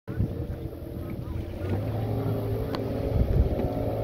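A 582-cubic-inch, roughly 1000 hp jet boat engine running at speed, heard at a distance as a steady low drone.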